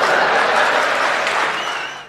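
Live theatre audience applauding, loudest early on and dying away toward the end.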